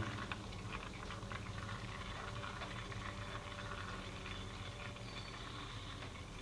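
Hydraulic fluid draining from an inverted plastic gallon jug through a coffee-filter funnel: faint, with small irregular ticks, the jug's plastic compressing under the vacuum inside it.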